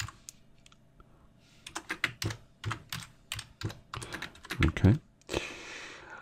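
Computer keyboard typing: a quick, irregular run of keystrokes starting about a second and a half in, after a near-quiet start.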